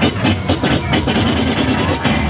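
Loud music with a strong, regular drum beat.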